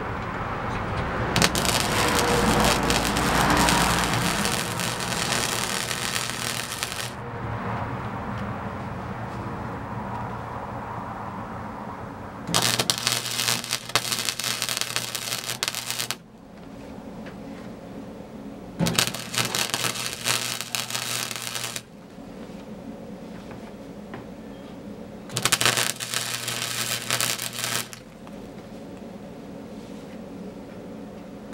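Wire-feed welder arc crackling and sputtering as a weld is run on a steel truck frame, in four bursts of a few seconds each; the first is the longest, about five seconds. A steady low hum carries on between the bursts.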